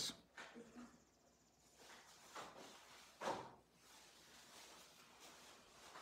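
Near silence: faint background with a few brief, weak sounds, the clearest about three seconds in.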